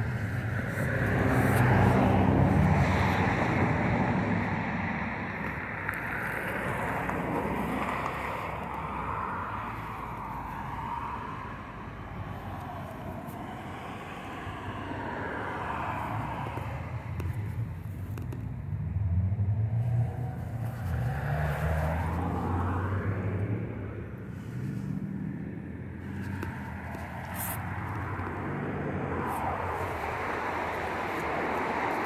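Outdoor road traffic: cars going by in a continuous wash of noise, louder about two seconds in and again for a few seconds past the middle.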